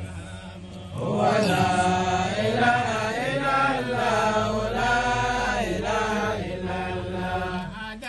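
A man's voice chanting in long, held melodic lines, starting about a second in.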